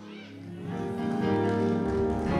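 Soft background music of sustained chords, growing louder about half a second in, with a deep bass note joining near the end.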